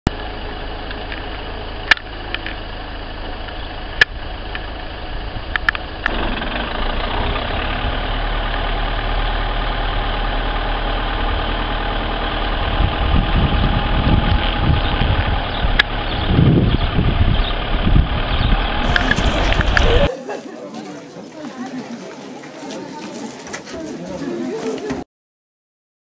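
A vehicle driving on a rough dirt road: a steady engine and road rumble with a few sharp clicks, getting louder a few seconds in. Near the end the sound cuts suddenly to a quieter, different background.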